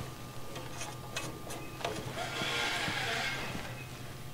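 Handling sounds of a dial-indicator set checker being slid along a steel sawmill band blade and seated on a tooth: a few light metallic clicks, then about a second of scraping past the middle. A low steady hum runs underneath.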